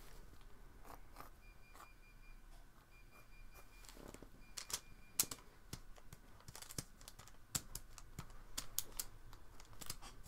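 Faint, irregular light clicks and taps, a few louder ones in the second half.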